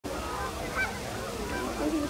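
A large flock of Canada geese honking, with many calls overlapping at once.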